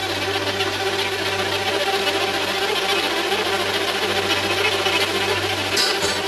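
Accordion playing a Maltese folk tune over a held bass note, its reeds giving a steady, buzzing chordal sound.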